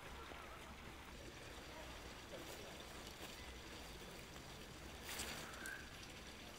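Faint outdoor field ambience with a low steady rumble, and a brief rustle about five seconds in.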